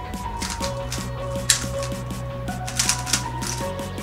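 Fast, irregular plastic clicking and clacking of a GTS2M 3x3 speedcube being turned during a timed solve, with louder flurries about a second and a half in and near the end. Background music with a steady beat runs underneath.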